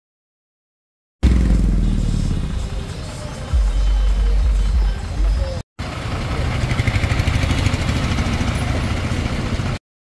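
Low engine rumble of an idling tourist coach, with street noise and people's voices around it. The sound starts about a second in and breaks off briefly a little past halfway.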